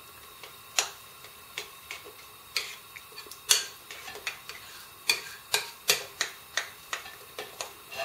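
A spoon clicking against a ceramic bowl while the fritter batter is mixed: irregular sharp clicks, coming faster in the second half.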